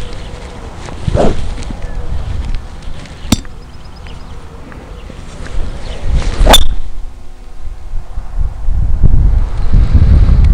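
Golf driver swung through and striking a ball off the tee: a swish, then a sharp, ringing click of the clubhead about six and a half seconds in. Another swish about a second in and a sharp click a little after three seconds. Wind rumbles on the microphone, growing toward the end.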